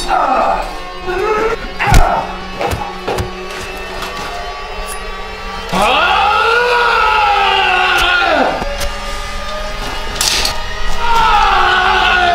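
Men yelling and grunting in a brawl, with a sharp hit about two seconds in and one long, drawn-out yell in the middle, over background music.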